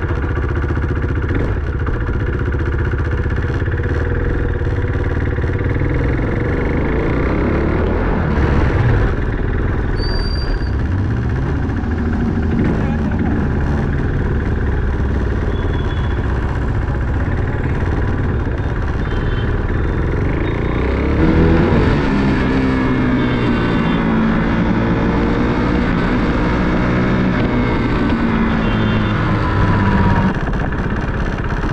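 KTM motorcycle being ridden, its engine running under way; the pitch rises and falls with the throttle and gear changes, most clearly in the last third.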